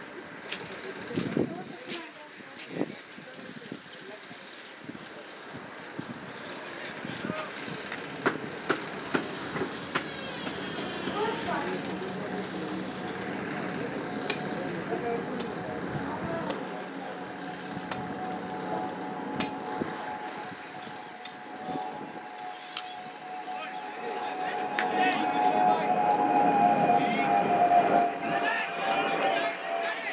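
Open-air ambience of voices and scattered sharp clicks. From about halfway a steady droning tone sets in, growing louder over the last few seconds to become the loudest sound.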